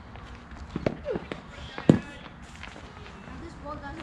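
A few sharp knocks, the loudest about two seconds in, among a batsman's shuffling steps on the net's artificial turf as he moves into a shadow cover drive. Faint voices near the end.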